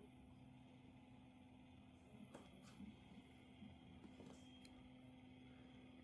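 Near silence: the NUUK FŌLDE battery desk fan's brushless DC motor running on its lowest speed, only a faint steady low hum.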